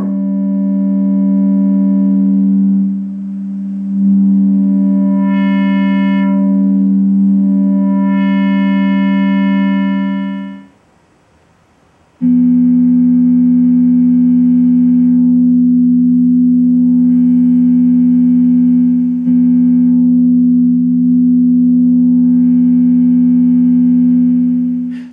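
HackMe Rockit synthesizer holding a steady note on a complex waveform rather than a sine, its upper overtones opening up and closing down in turns as the filter cutoff is raised and lowered. About eleven seconds in the note stops briefly, then a slightly lower note is held and brightened and darkened the same way.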